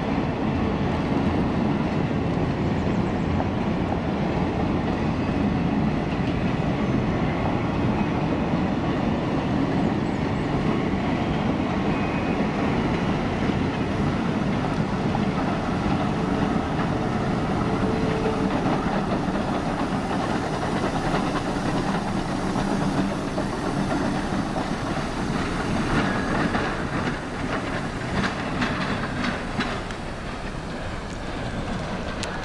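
A steam-hauled train of open-sided passenger cars rolling past, wheels clattering and rumbling over the rail joints, followed by the Western Maryland Shay geared steam locomotive pushing at the rear. Near the end faint quick regular beats come through.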